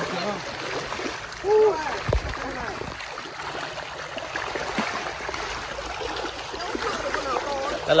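Large tilapia thrashing at the surface of a crowded fish cage: a continuous churning and splashing of water, with a few sharper splashes.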